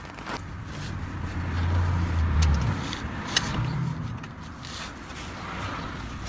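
Breaker bar and socket being strained against a seized 13 mm sump drain plug that does not come loose: a low rumble, with two sharp clicks in the middle.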